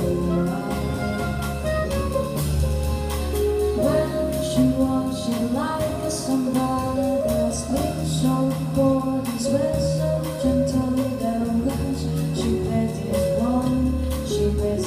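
Live jazz band playing: a woman singing, backed by a drum kit with cymbals, upright double bass, keyboard and a woodwind.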